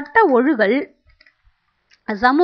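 A woman speaking Tamil in a lecture for about the first second, then a pause with only a few faint clicks.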